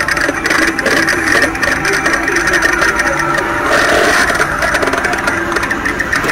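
A Halloween animatronic of the possessed girl Regan from The Exorcist gives off a steady, engine-like drone with fine crackle running through it.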